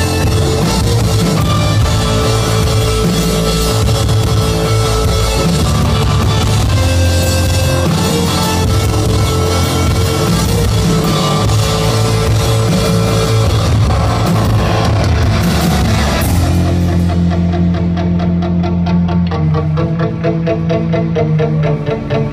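Rock band playing live, with electric guitar, bass and drum kit at full volume. About sixteen seconds in the drums and cymbals drop out, leaving guitar and bass playing a sparser, rhythmic passage.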